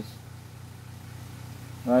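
A steady low hum in the room, between spoken words.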